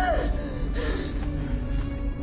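A woman's strained, gasping cry right at the start, and a shorter one just under a second in, over a dramatic film score holding a low sustained note.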